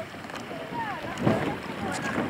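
Water sloshing around swimmers and a kayak, with voices calling out and a couple of short splashes in the second half.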